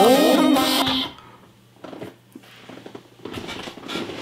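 Electronic dance-pop music with a sliding pitch sweep, cutting off about a second in, leaving a quiet room with only faint scattered noises.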